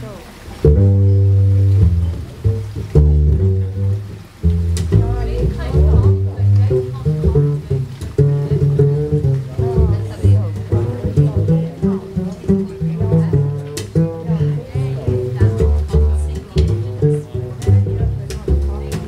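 Acoustic swing band playing an instrumental intro: plucked double bass, a resonator guitar and a smaller guitar strumming, with cajon beats. The band comes in together about a second in.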